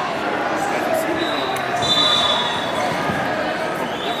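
Crowd murmur and scattered voices in a large arena hall, with a faint thin high-pitched tone, like a distant whistle, about a second in and again near the end.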